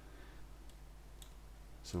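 Two faint computer-mouse clicks about half a second apart, over a low, steady hum.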